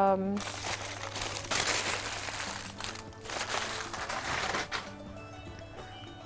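Crinkling and crumpling of food wrapping being handled, in three stretches that end a little before the last second.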